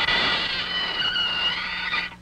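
Cartoon sound effect of a sarcophagus lid creaking open: one long, high squeal with a slight waver in pitch that cuts off suddenly at the end.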